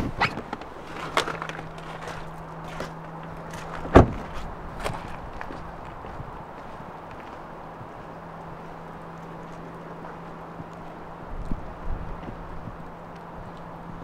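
A car door, a 2013 Audi A3's, opened and shut with one loud thud about four seconds in, followed by footsteps on wet ground in falling rain, with a faint low steady hum underneath.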